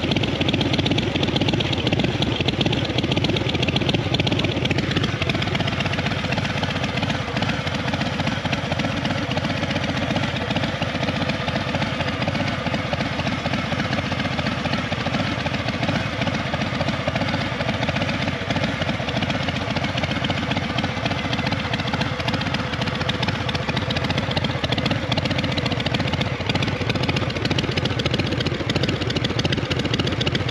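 2023 Harley-Davidson Fat Boy's Milwaukee-Eight 117 V-twin idling steadily through a newly fitted chrome Vance & Hines Big Radius 2-into-2 exhaust, which replaced the stock system and runs with a new tune.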